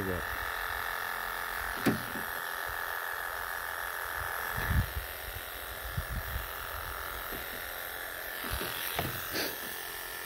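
Wahl KM2 electric animal clippers with a #40 surgical blade running with a steady buzz as they shear a long-haired Persian cat's coat, with a few short dull bumps along the way.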